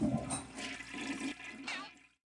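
A toilet flushing: water rushing through the bowl, dying away at the end.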